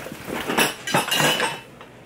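Stainless steel egg poacher's loose metal parts clinking and rattling inside its cardboard retail box as it is lifted, several clinks in the first second and a half, then quieter.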